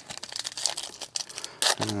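Foil trading-card pack wrapper crinkling and tearing as it is opened by hand, in scattered crackles with a sharper rip near the end.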